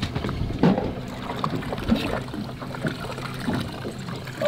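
Water splashing and trickling at the side of a small fishing boat, over a steady low hum, with a few short knocks.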